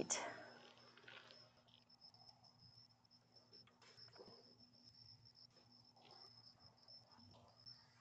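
Near silence with a faint, steady, high-pitched insect trill, like a cricket, and a few faint ticks.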